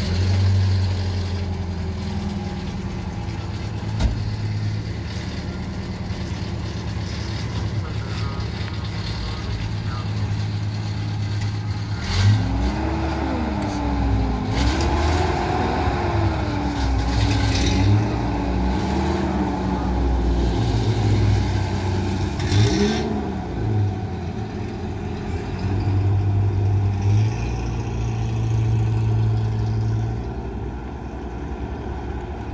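Pickup truck engine running at a steady idle, a low hum that holds almost unchanged.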